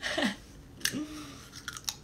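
A person biting into and chewing a small snack: a few sharp crunching clicks about a second in and again near the end, with two short hummed vocal sounds, one falling at the start and one held briefly about a second in.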